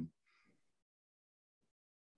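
Near silence: a pause between words.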